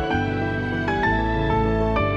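Slow, sad background music: a melody of separate notes changing a few times a second over a held low bass.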